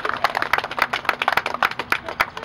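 Applause: many hands clapping in a quick, irregular patter.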